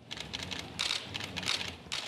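Many press camera shutters clicking rapidly and overlapping, starting abruptly at a cut.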